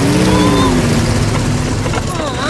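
Small old car's engine running as it drives up and slows to a stop, its pitch rising and then falling away.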